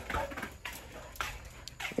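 Several light clicks and knocks of handling noise over a low background hum.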